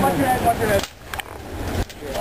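Strained, wordless voices of people hauling a man out of freezing water, in the first second. Then a quieter stretch with a few short knocks and scrapes of handling.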